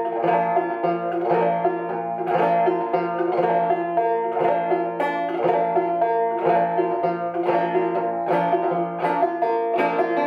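1888 Luscomb open-back banjo, tuned about two frets below gCGCD, played in two-finger style with a four-finger downward brush across the strings worked into the rhythm. This is the clawhammer brush done with two-finger picking, giving a steady, rhythmic run of plucked notes with regular brushed strokes.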